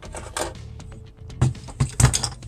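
Version 6 airsoft gearbox being slid out of the P90's plastic body, with light clicks and scrapes of metal on plastic, then two louder knocks near the end as it is set down on the table.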